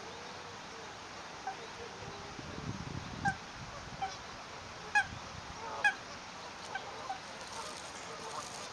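Mute swans at the nest giving short nasal calls, about seven spread over several seconds, the two loudest a little past the middle. A brief low rumble sounds about three seconds in.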